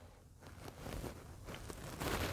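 Faint rubbing and scuffing of fingertips on single powder eyeshadow pans and skin as the shadows are swatched, with a few light ticks.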